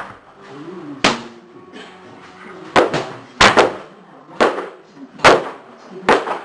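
Hard, sharp strikes or slams on gym training equipment: about seven impacts at an irregular pace, several in quick pairs, each with a short ringing tail in a reverberant room.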